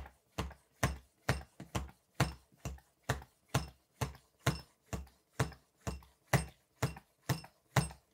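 Hand shock pump being worked in steady strokes, each a short sound, about two a second. It is pressurising a Fox shock's IFP chamber through a nitrogen needle past 350 psi toward 400 psi, where each stroke takes real force.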